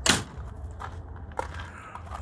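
One sharp, crunching knock right at the start, followed by two faint clicks, over a low steady rumble.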